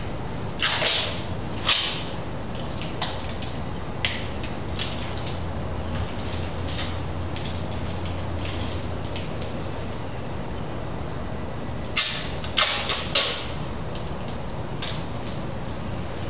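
Tape being pulled off a roll in short, sharp pulls while taping over the tops of PVC sensor pipes. There are a few pulls in the first two seconds and a cluster about twelve seconds in, over a steady low hum.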